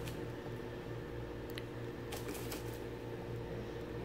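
Faint light clicks and taps of a boxed vinyl figure in a plastic protector case being handled and turned over, over a steady low hum.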